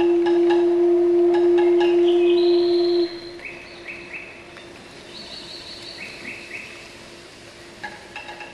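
Orchestra playing: a loud held note stops abruptly about three seconds in. After it, much quieter high, bird-like chirping figures are left, repeated in short runs.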